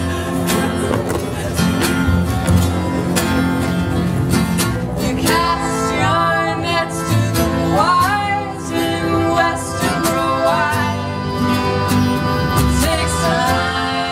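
Live acoustic band music: plucked guitar with sustained low notes, joined about five seconds in by a melody line with sliding, bending pitches.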